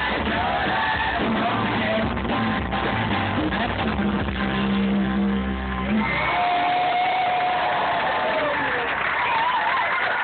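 A live band with guitars and vocals playing through a large outdoor PA, heard from within the crowd, ending on a held note about six seconds in. The crowd then cheers and yells.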